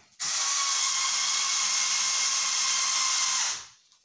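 Cordless drill-driver motor running at one steady speed for about three seconds, driving a screw, then winding down to a stop.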